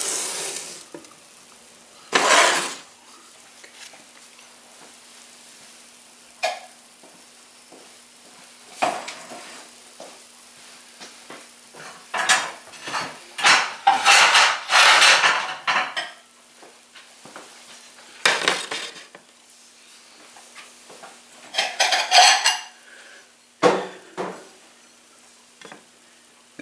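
Dishes and kitchenware being handled and set down: a series of separate short clinks and clatters, bunched most closely together in the middle.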